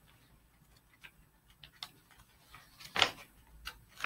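A quiet pause filled with a few faint, scattered clicks and ticks, with a brief louder rustle about three seconds in.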